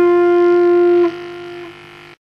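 Electric guitar sustaining one held note, which is damped about a second in and leaves a quieter ring that drops again near the end.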